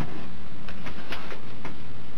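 Steady hiss and low hum of the room recording, with a few faint ticks.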